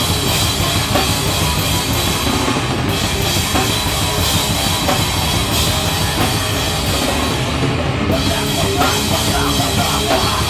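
Live band playing heavy, distorted rock: a drum kit with cymbals, electric guitar and bass guitar, loud and unbroken throughout.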